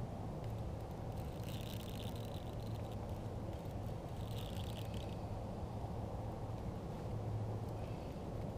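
Fishing reel buzzing in two short bursts, the first about a second and a half in and a shorter one near the middle, while a hooked fish is being played. A steady low rumble runs underneath.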